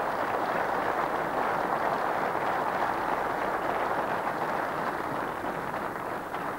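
Studio audience applauding steadily, easing off slightly near the end.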